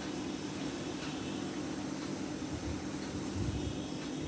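Thin spiced fish-curry gravy boiling hard in a metal kadai, a steady bubbling hiss. A steady low hum runs beneath it.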